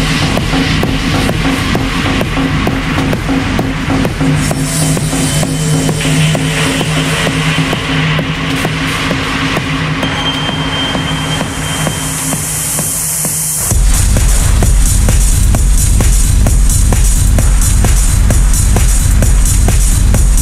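Dark techno mix in a breakdown: held low synth tones over a light pulse, with a rising high noise sweep building up. About fourteen seconds in, the sweep cuts off and a loud, steady kick drum drops back in.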